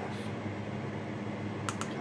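Steady low room hum, with two or three light, quick clicks near the end from a plastic measuring spoon and black pepper jar being handled over the counter.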